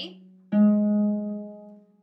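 A single string of a double action pedal harp, the A string (second string above the black F string), plucked once about half a second in and left to ring, dying away over about a second and a half.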